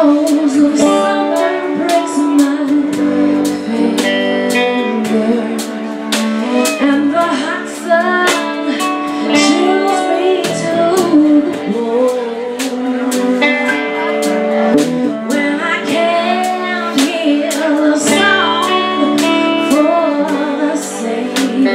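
Live band playing a slow song: a woman sings lead over strummed acoustic guitar and drums, with cymbal strokes keeping a steady beat.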